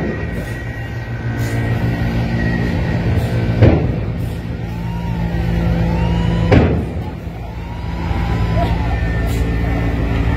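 Diesel engine of a Hyundai coach running as the bus slowly reverses and turns, with a sharp burst twice, about three seconds apart.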